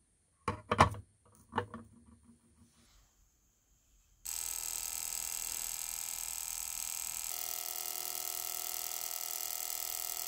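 Ultrasonic cleaner switching on about four seconds in and running with a steady electric buzz of many high tones, its pitch shifting slightly partway through. Before it starts, a couple of short knocks as the metal casting is set down in the tank.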